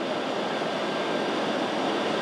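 Steady, even rushing noise of milking-parlor machinery: large ventilation fans and milking equipment running.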